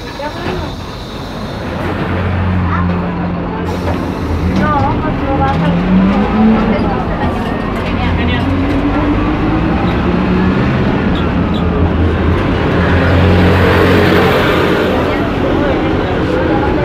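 City bus engine running as the bus drives, a steady low drone whose pitch rises several times as it picks up speed. A broad hiss swells near the end.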